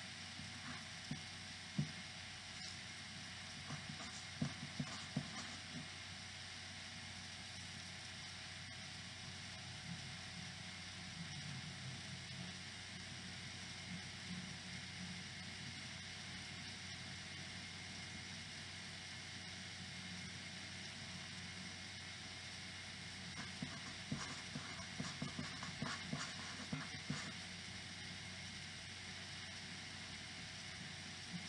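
Faint room tone: a steady electrical hum and hiss, with scattered small clicks and rustles of handling at a desk during the first few seconds and again a few seconds before the end.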